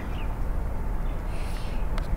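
Steady low outdoor background rumble, with a brief faint rustle and a small click as a pocket watercolour palette is picked up and handled.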